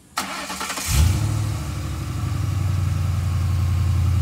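Ford Crown Victoria Police Interceptor's 4.6-litre V8, fitted with headers and a cold air intake, started by push button: a brief crank, catching about a second in, loudest as it catches, then settling into a steady idle.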